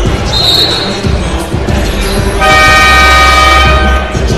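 Basketball arena buzzer sounding one steady, loud tone for about a second and a half, starting a little past halfway, over background arena music.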